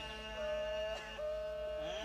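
A man's voice holding a long, steady sung note, broken once about a second in and then held again, in the chanted style of a zakir's recitation. A steady hum lies underneath.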